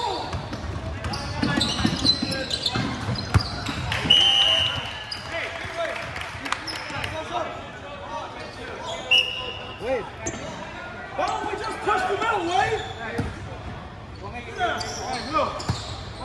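Basketball game sounds echoing in a gymnasium: the ball bouncing on the hardwood floor, sneakers squeaking, and players and spectators calling out. Two short shrill referee whistle blasts come about four and nine seconds in.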